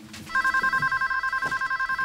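Landline telephone's electronic ringer sounding one ring: a fast warbling trill that flips rapidly between two pitches, starting about a third of a second in.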